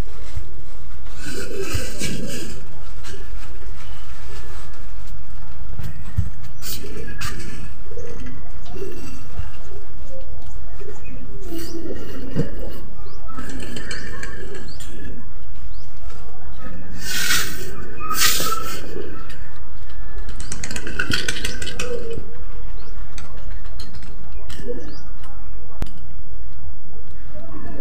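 A woman's voice muffled by a cloth gag over her mouth, coming out as low, wordless mumbling and humming in irregular bursts. Short noisy rustles of the cloth come in several times.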